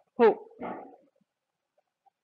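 Speech only: a lecturer's voice finishing a sentence in Hindi with a short word, two syllables, the first falling in pitch, then a pause.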